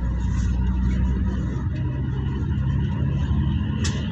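Steady low rumble of a moving road vehicle heard from inside the cabin, engine drone and road noise, with a short click near the end.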